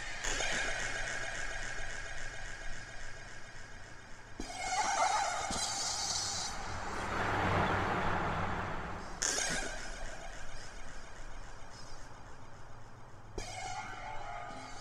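Minimal electronic techno: buzzing, insect-like synth tones over a steady low pulse and fast repeating high ticks. A noisy wash swells up about halfway through and drops away sharply about two seconds later.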